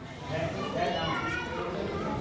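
Several people talking over one another, with children's voices among them.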